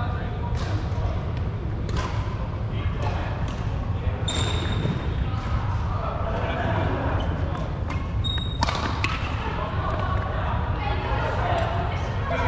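Badminton rallies in a large sports hall: repeated sharp hits of rackets on shuttlecocks and footfalls on the wooden court, echoing in the hall, with players' voices in the background.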